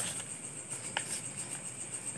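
Faint rustle of a plastic skincare sachet being handled and turned over, with a single light click about a second in, over a steady high hiss.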